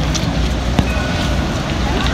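Outdoor city street ambience: a steady low rumble of distant traffic and wind on the microphone, with a faint high tone in the second half and a single click near the middle.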